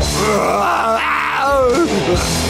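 A cartoon character's drawn-out angry groan, wavering in pitch, over background music.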